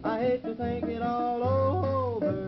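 Wordless country yodel: the singer's voice breaks upward and holds a high note before falling away near the end, over guitar accompaniment. The recording is a 1949 shellac 78 rpm record with a narrow, muffled top end.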